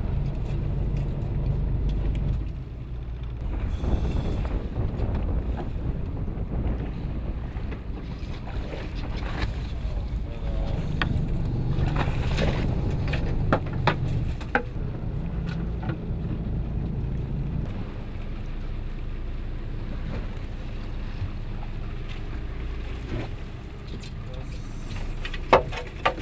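Low rumble of a small fishing boat at sea, with wind on the microphone. A few sharp knocks sound on board, the loudest near the end.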